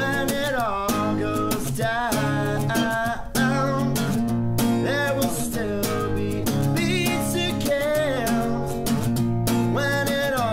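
A man singing a pop-punk song to his own strummed acoustic guitar, the voice sliding between held notes over steady chord strumming.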